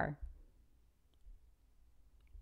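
A woman's voice finishes a word at the start. After that come a few faint, light clicks as a small rubber duck is lifted from a plastic tub and set down on a paper card on a wooden table.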